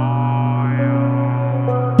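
Background music: a sustained low drone, with a held chord of higher tones that comes in at the start and shifts slightly about a second in.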